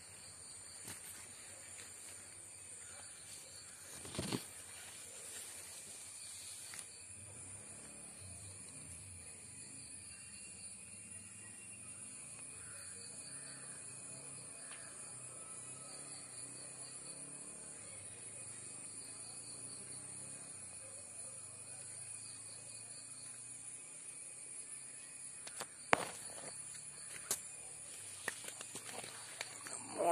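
Quiet outdoor garden ambience: a steady high-pitched insect drone runs under everything, with a few sharp knocks from the phone being handled about four seconds in and again near the end.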